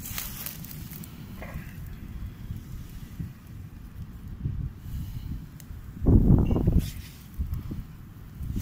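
Wind buffeting the microphone: a steady low rumble, with one much louder gust about six seconds in.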